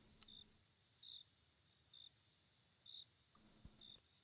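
Near silence with faint cricket chirps, short and repeating about once a second, over a steady high-pitched hiss; a faint soft knock near the end.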